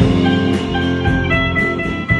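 Several electric guitars playing together through amplifiers, an instrumental passage with no singing. A line of single held notes sounds over the strummed chords from about a second in.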